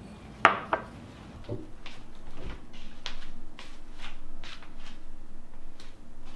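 A ceramic dish clinks sharply against the plate or board about half a second in, with a second, lighter knock just after. From about two seconds in comes a run of short hissing crackles, a few each second, growing louder.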